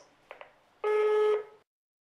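Two faint clicks, then a single steady electronic beep lasting about two-thirds of a second: an answering machine's tone at the end of a recorded message.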